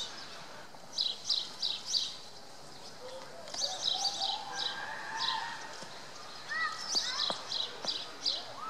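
Small birds chirping: short, high notes in quick clusters of four or five, repeating every two to three seconds.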